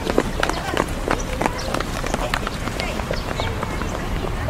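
Footsteps on paving, a string of irregular taps and clicks, with faint voices of people talking and a low wind rumble on the microphone.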